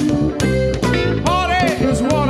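Funk band of electric guitar, bass guitar and drum kit playing live together, a garage recording made straight to tape with some distortion. Drum hits fall at an even beat under the guitar.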